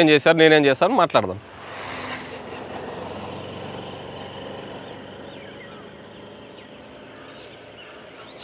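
A man's voice for about the first second, then the sound of a motor vehicle swelling about two seconds in and slowly fading away.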